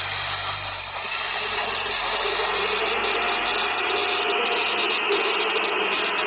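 Crawler bulldozer's diesel engine running under load as its blade pushes soil. A steady mechanical noise.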